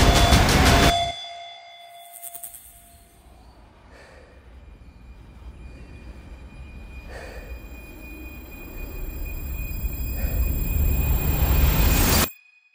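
Horror-trailer score and sound design: a loud passage cuts off about a second in, leaving a low drone with high held tones that swells steadily louder to its peak near the end.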